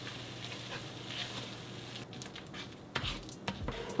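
Beans in red chile sauce sizzling in a frying pan, then being mashed and stirred, with wet squishing and sharp clicks and knocks of the utensil against the pan in the last two seconds.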